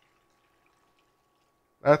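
Water poured from a glass measuring jug onto cut celery in a pot, a faint steady trickle; a man starts speaking near the end.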